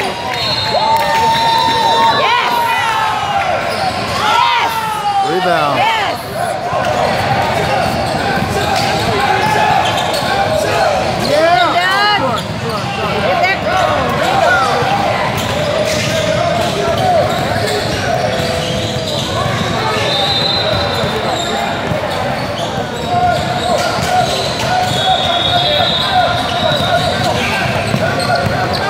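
Basketball game sounds in a large gym: a ball dribbling on the hardwood floor, sneakers squeaking, and voices of players and spectators, all echoing in the hall.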